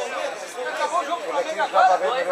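Indistinct chatter of voices, with no clear words.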